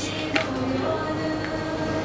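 A group of voices singing a Japanese song unaccompanied, holding the last notes, which fade out near the end.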